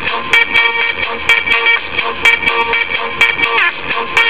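An electronic music track playing from a GPS unit's media player: held synth chords over a beat that strikes in pairs about once a second.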